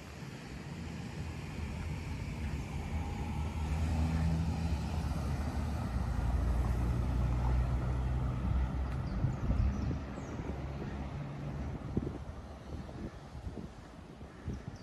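A car driving past on the street, its engine and tyre noise swelling to a peak in the middle and then fading away.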